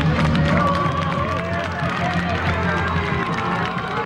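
A crowd clapping and cheering, with many voices calling out at once over music playing underneath.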